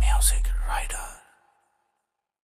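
End of a Punjabi song: a low held bass note dies away under a short whispered voice, and the track cuts off a little over a second in.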